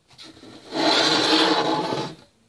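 Camera handling noise: a loud rubbing scrape that starts a little under a second in and lasts about a second and a half.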